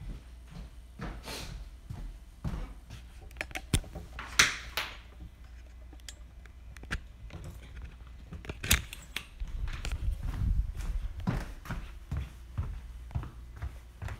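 Handling noise of a smartphone, recording itself, as it is picked up and carried: irregular clicks, knocks and rubbing on its microphone. Louder scrapes come about four seconds in and again near nine seconds, with a low rumble around ten seconds.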